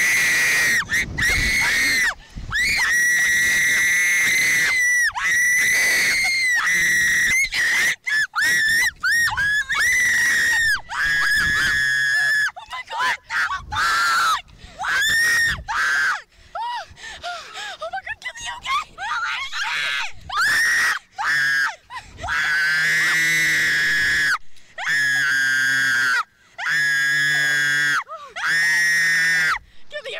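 Two girls screaming over and over on a Slingshot reverse-bungee thrill ride: long, high-pitched screams held for a second or two each with short breaks between. In the last few seconds the screams drop lower in pitch.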